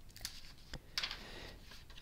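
Faint handling noise from a hardcover book being closed and put down: a few light clicks and a short rustle about a second in.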